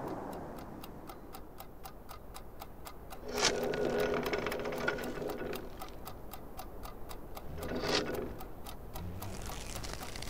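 Clock-like ticking, rapid and evenly spaced, in a film soundtrack. Two louder ringing tones rise over it: one strikes about a third of the way in and fades over a couple of seconds, and the other swells up and cuts off near the end.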